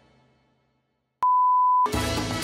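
Music fades out into a moment of silence, then a single steady electronic beep at one pitch sounds for just over half a second. It starts with a click and cuts off suddenly as music comes back near the end.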